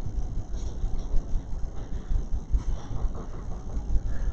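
Steady low rumble of room noise through the podium microphone, with no speech.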